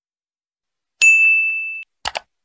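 A single notification-bell 'ding' sound effect, struck about a second in and ringing on one clear tone before cutting off abruptly.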